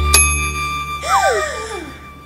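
Edited-in cartoon sound effects: a bright bell-like ding that rings on, a 'done' chime for a checked-off task, then about a second in a whistly tone that rises briefly and slides down in pitch.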